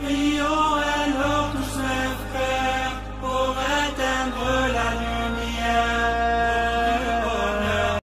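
A single voice chanting slow, drawn-out melodic lines with ornamented held notes, over a low steady drone.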